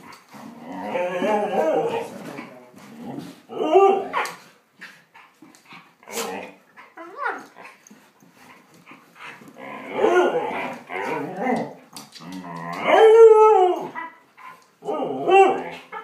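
Two dogs play-fighting, giving howl-like yowls and barks in repeated bursts, the loudest a long arching yowl about thirteen seconds in.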